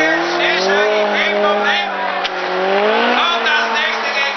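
BMW E30 M3 rally car's four-cylinder engine revving hard under acceleration, its pitch climbing at the start, holding, then dipping and rising again about three seconds in.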